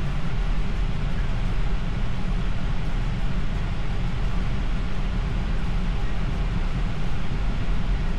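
Steady low road and tyre rumble heard inside the cabin of a 2026 Tesla Model Y, an electric car, cruising at about 39 mph.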